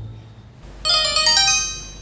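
Mobile phone ringtone: a quick run of high melodic notes about a second in, then fading.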